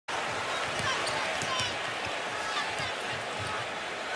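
Steady crowd din in a basketball arena, with a basketball being dribbled on the hardwood court.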